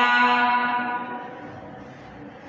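A woman's voice holding one long, steady vowel at an even pitch, drawn out for about a second, then fading into room tone.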